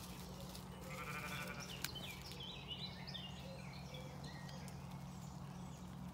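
A sheep bleating faintly with a tremble about a second in, then woodland birds chirping over a steady low hum. A single sharp click sounds just before the chirping starts.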